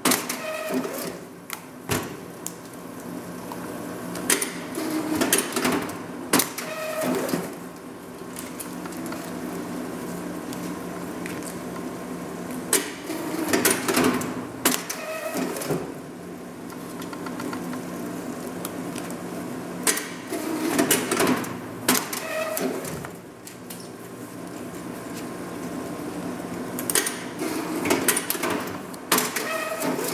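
Polychem PC102 semi-automatic plastic strapping machine running with a steady hum. Several times it goes through a strapping cycle, a burst of whirring and clicking as it draws a plastic band tight around a box and feeds out fresh strap.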